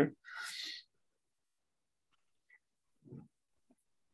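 A man's short breath out, just after his last word, then near silence with one brief low voice sound about three seconds in.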